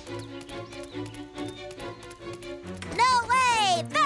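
Cartoon soundtrack: background music with quick, even patter-like footstep effects as animated dinosaurs run. About three seconds in, a loud, high cartoon voice cry sets in, twice arching up and sliding down in pitch.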